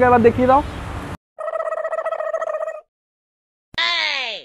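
A voice trails off at the start, then the sound drops to dead silence and two edited-in sound effects play: a steady buzzy tone about a second and a half long, and near the end a quick, steeply falling whistle-like glide.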